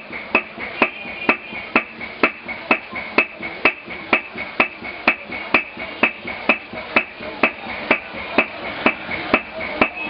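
Steady hammer strokes beating metal leaf, about two strikes a second in an even rhythm.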